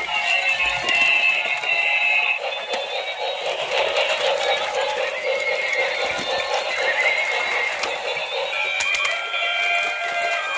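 Tinny electronic tunes and jingles from battery-operated light-up toys, played through their small speakers, with no bass.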